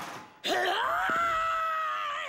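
A cartoon character's long, drawn-out vocal cry, sweeping up in pitch about half a second in and then held on one note.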